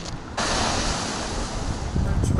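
Surf washing onto a pebble beach, mixed with wind on the microphone. The rush of noise comes in suddenly about half a second in and holds steady.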